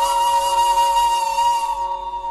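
Intro music: a single long held note, like a flute, over a steady drone, starting to fade near the end.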